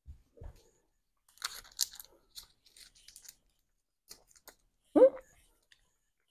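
Faint, scattered chewing and mouth sounds, soft clicks and smacks, of people eating Reese's Werewolf Tracks peanut butter cups.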